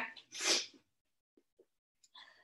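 A single short, sharp burst of breath from a woman, about half a second in, lasting under half a second.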